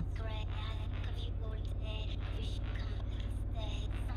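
A song with a singing voice, heard over the steady low drone of a motorcycle engine and wind as the bike rolls slowly.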